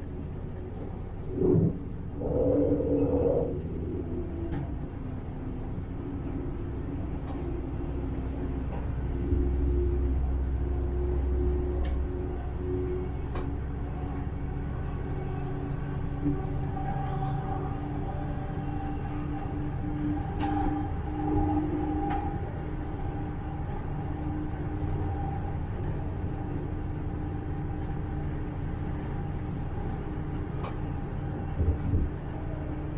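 Diesel railcar running along single track, a steady low rumble from engine and wheels on rails with a constant drone and whine above it. A brief louder pitched sound comes about two seconds in.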